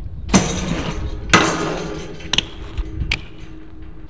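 A BMX bike hitting a metal handrail with a clank, then a louder clank about a second in, followed by a scraping grind along the rail that fades while the rail rings on in a steady tone. Two lighter knocks follow near the end.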